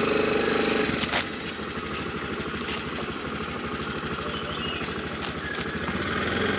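Small petrol scooter engine running steadily at low speed under light throttle.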